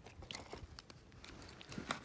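Faint, wet, irregular clicks and squelches of a slimy small fish being handled in bare hands, then tossed back.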